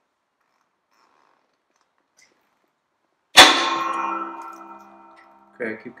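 A valve guide cracking loose in a cast-iron tractor cylinder head under a hydraulic shop press: one sudden loud crack about three seconds in, followed by metallic ringing that dies away over a second or so. This is the first crack as the seized guide gives way to the press.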